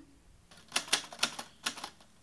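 Typewriter keystroke sound effect: after a near-quiet start, a quick, irregular run of sharp clacks begins near the middle, about six a second.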